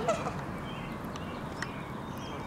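Canada geese with goslings: the end of a short, bending adult goose call right at the start, then the goslings' thin high peeps scattered through the rest. A few faint clicks are mixed in.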